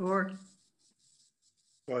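Speech: two numbers called out by voices over a video-call line, one at the start and another near the end, with faint hiss in the pause between.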